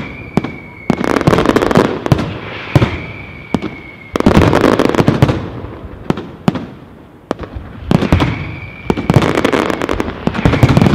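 Aerial firework shells of a castillo display bursting in rapid succession: many sharp bangs over a dense wash of noise that swells and eases in waves, with a thin high tone heard a few times.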